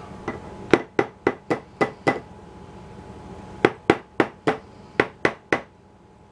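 Immersion blender's metal blending head rapped against the rim of a glass mason jar to knock off clinging mayonnaise: sharp knocks about four a second, a run of six, a pause of over a second, then two runs of four.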